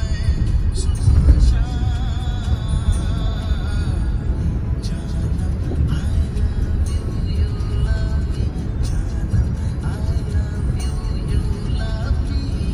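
Music plays over the steady low rumble of a car driving on a wet highway, heard from inside the cabin.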